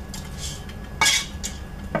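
Clinks and scrapes of a cooking pot and glass baking dish as sticky rice cereal treat mixture is scooped out of the pot into the dish: a few short, sharp clinks, the loudest about a second in.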